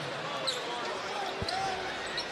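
Basketball arena sound with faint crowd voices. A short high squeak comes about half a second in, and a single low thud like a ball bounce on the hardwood court comes about a second and a half in.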